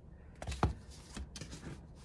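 A plastic comb-bound sticker book being set down and handled on a table: two soft knocks about half a second in, then faint light clicks and rustles of the cover under the hands.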